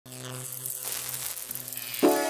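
Electronic intro sound effect: a hissing whoosh over a steady low hum, building gradually as a lead-in.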